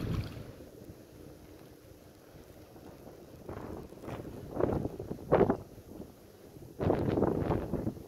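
Hooked tilapia thrashing and splashing at the water's surface in several short bursts, the loudest about five seconds in and near the end, with wind buffeting the microphone.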